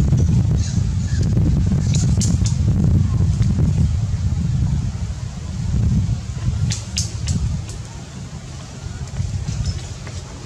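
Low, uneven rumble of wind on the microphone, swelling and fading, with a few short sharp clicks about two seconds in and again about seven seconds in.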